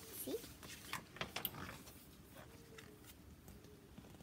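A picture book being handled and its page turned: a few short paper rustles and light taps, clustered about a second in.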